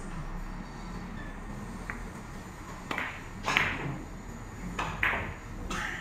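Four-ball carom billiard shot: sharp clicks of the balls striking one another, a faint one about two seconds in, then several more in the second half, the loudest about three and a half seconds in. The shot scores a point.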